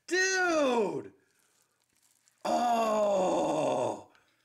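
A man's two long, drawn-out wordless exclamations of amazement, each sliding down in pitch: the first lasts about a second, the second begins about halfway through and runs about a second and a half, with a quiet pause between.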